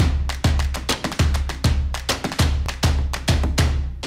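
Channel intro music: an upbeat electronic track with a heavy bass drum beat about two to three times a second and snare hits. It starts abruptly and plays through.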